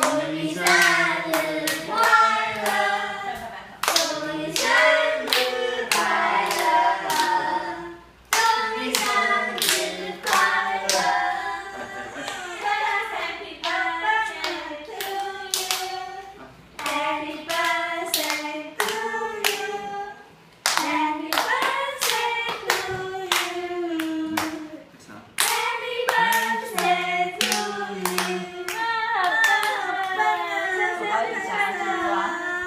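A group of voices singing a birthday song together, with hands clapping along throughout; the singing breaks off briefly three times between verses.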